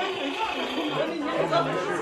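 Indistinct chatter of several people talking at once in a room, with no single voice standing out.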